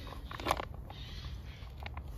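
Short rustles and clicks of things being handled, with a brief crackle about half a second in, over a low steady rumble.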